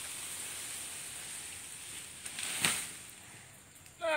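Rustling and scuffing through grass as a water buffalo hauls a wooden cart over rough ground, with a single sharp knock about two and a half seconds in.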